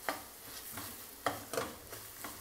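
Diced vegetables frying in a stainless steel kadai, stirred with a slotted spatula: a soft sizzle under a few short scraping strokes of the spatula against the pan.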